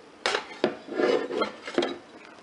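A ceramic mug and a Keurig single-cup coffee maker being handled: several sharp knocks and clatters in quick succession.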